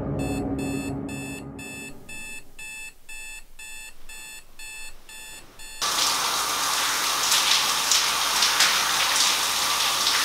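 An electronic alarm clock beeping about two to three times a second. About six seconds in it gives way suddenly to a shower running steadily.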